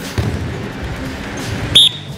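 Wrestlers grappling on a practice mat: scattered low thuds of bodies and feet hitting the mat. Near the end comes one short, piercing high-pitched chirp, the loudest sound.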